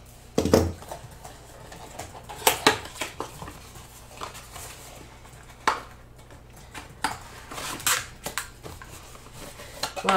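A small cardboard box handled and opened on a tabletop: a thump about half a second in as it is set down, then scattered taps, clicks and scrapes as its flaps are pried open.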